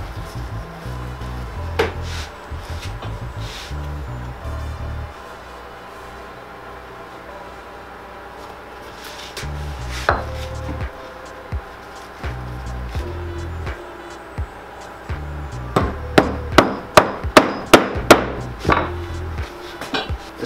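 Hammer driving nails from inside a shoe through the sole into the heel block: a few single knocks, then a quick run of about eight sharp strikes near the end.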